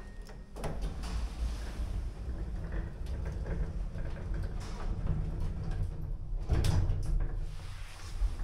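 Morris Vermaport passenger lift: the car's stainless-steel sliding doors closing over a steady low hum, then a louder clunk and low rumble about six and a half seconds in as the lift starts to move.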